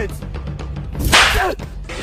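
A short whooshing swish, about half a second long, around the middle, over faint background music.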